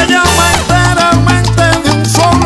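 Salsa music in an instrumental passage with no singing: a stepping bass line under percussion and pitched melodic parts.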